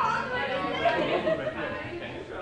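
Indistinct chatter of several people talking at once in a room, no single voice clear.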